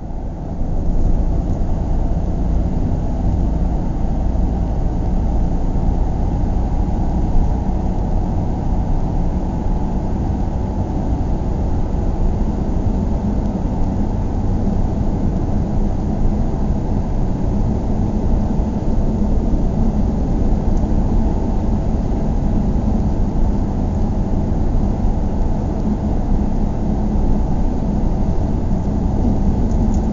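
A car driving along, a steady low rumble of engine and tyre noise that carries on without a break.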